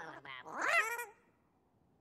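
Squeaky cartoon-character vocal sound effects: a short buzzing rattle, then one rising-and-falling squealing cry, after which the sound stops.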